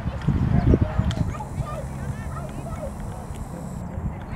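Indistinct voices talking at a distance, with low rumbling thumps on the microphone, loudest in the first second.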